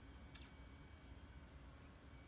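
Near silence: quiet room tone, broken once by a brief, high, sharp sound about a third of a second in.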